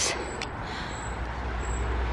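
Steady low rumble of distant road traffic from a dual carriageway.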